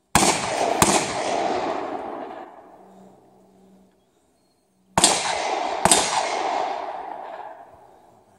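Two pairs of gunshots from a live-fire drill, the pairs about five seconds apart and the shots in each pair under a second apart. Each pair leaves a long rolling echo that fades over about two seconds.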